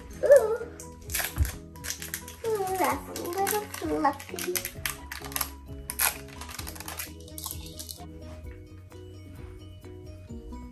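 Thin plastic cheese-slice wrapper crinkling as it is peeled and handled, in irregular bursts that stop about eight seconds in, over steady background music.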